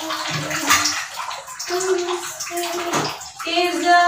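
Kitchen tap running into the sink while dishes are washed by hand, with a steady rush of water.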